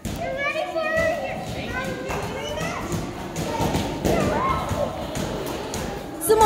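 Children playing and talking over adults' chatter in a large hall, with a few thuds among the voices.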